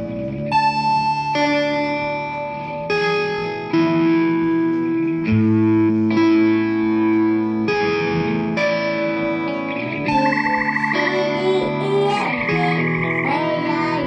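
Instrumental guitar music: sustained chords changing every second or so, with a wavering, bending lead line coming in about ten seconds in.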